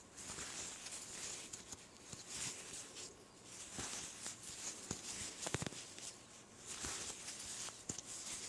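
Faint rustling of cotton yarn and hands working a metal crochet hook, with a few light clicks scattered through, as single crochet stitches are worked around a ponytail holder.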